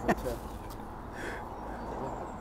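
Outdoor background noise during a pause in talk: a steady low rumble with faint distant voices, after the tail of a spoken word at the start.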